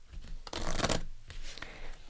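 A deck of angel oracle cards being shuffled by hand: a dense rustle of sliding cards, strongest about half a second in, then a couple of shorter shuffles.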